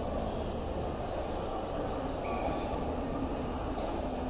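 Steady indoor shopping-mall background noise: a constant low hum with an even wash of sound over it.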